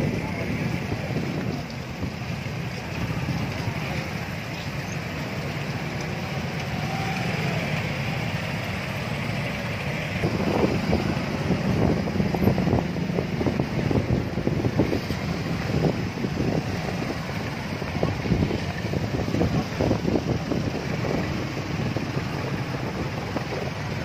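Many motorcycle engines running as a dense column of motorbikes moves slowly along the road, mixed with the voices of a crowd. The sound grows louder and choppier about ten seconds in.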